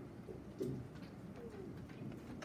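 Faint, low murmuring voices: a short sound about half a second in and a falling one near the end.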